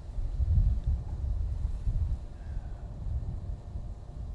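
Wind buffeting the microphone: an uneven, gusty low rumble, strongest about half a second in.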